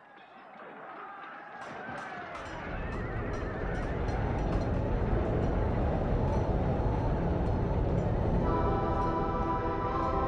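Atmospheric intro of a melodic metal album, fading in: wavering, sliding cries over a deep rumble that builds from about two and a half seconds in, then a held synthesizer chord enters near the end.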